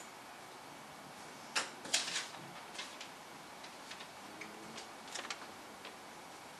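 A fortune cookie being unwrapped and cracked open: scattered sharp crackles and snaps, a bunch of them about two seconds in and another just after five seconds.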